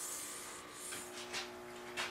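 Quiet room tone: a faint steady hum and hiss, with a couple of soft brief sounds about a second in.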